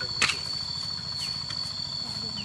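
Steady high-pitched insect chorus, typical of crickets around a rice paddy, with a few short falling chirps at intervals. A brief sharp rustle stands out about a quarter second in.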